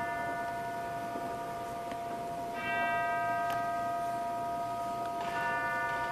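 Tubular bells tolling as church bells in the opera orchestra, struck twice, a little before halfway and near the end, each stroke ringing on over a held tone.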